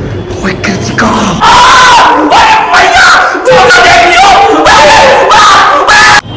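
Several male voices yelling and shouting very loudly together in long, distorted shouts with brief breaks between them, starting about a second in.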